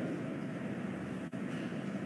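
Steady low background noise of a large room, with no distinct event: room tone between spoken sentences.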